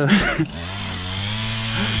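A short laugh, then a small two-stroke engine running steadily at one even pitch from about half a second in.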